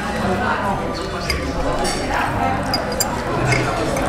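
Indistinct conversation at a restaurant table, with a few light clinks of metal forks against plates.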